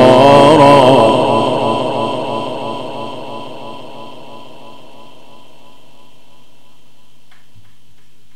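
Mujawwad-style Quran recitation through a loudspeaker system with heavy echo: the reciter's held, wavering last note stops about a second in and trails off in a long echo over the next three seconds. Then only a steady low hum from the sound system remains, with a faint knock near the end.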